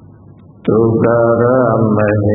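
A man chanting Buddhist paritta verses in a drawn-out, sustained recitation, coming back in after a short breath pause about two-thirds of a second in.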